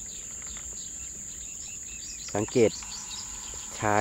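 A steady, high-pitched trill of insects that does not break.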